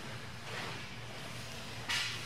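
Rustling of heavy cotton jiu-jitsu gis and bodies shifting on the mat as the grapplers adjust position, with a brief louder swish just before the end, over a steady low room hum.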